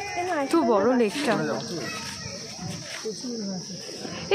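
People talking, a little farther from the microphone than the narrator, over a steady high-pitched hiss.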